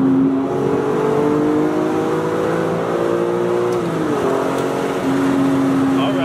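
BMW E46 M3's straight-six engine, with a Top Speed muffler and an added resonator, heard from inside the cabin: its note climbs steadily under acceleration for about three seconds, falls away at about four seconds as the throttle eases, then holds a steady cruising drone.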